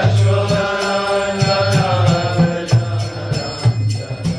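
Devotional mantra chanting with music: singing voices over held tones, with hand cymbals striking in a steady rhythm and a drum beating low underneath.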